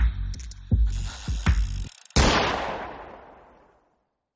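The song's last bars, with heavy, evenly spaced bass beats, stop about two seconds in; after a brief silence a single gunshot sound effect goes off and dies away over about a second and a half.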